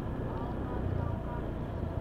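Steady low rumble of distant road traffic, with faint voices.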